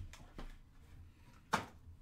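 Trading cards and plastic card holders being handled on a tabletop: a couple of light taps and one sharp plastic clack about one and a half seconds in.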